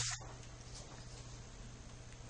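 Faint steady background hiss with a low hum: the recording's room tone between spoken sentences.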